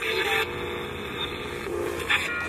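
A steady drone of held tones that steps down in pitch near the end, over a faint hum.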